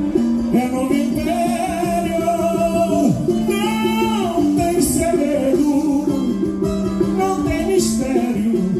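Live samba-enredo: a voice singing the melody over a strummed cavaquinho and band accompaniment.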